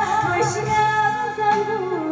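A woman singing a slow Taiwanese Hokkien ballad over a backing track through the stage PA, the melody moving in long held notes, one of them wavering.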